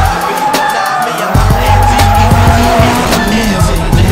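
Music with a steady beat, over a drifting car's tyres squealing in a long wavering screech and its engine running.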